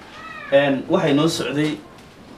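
A man speaking, his voice strongest from about half a second in until shortly before the end.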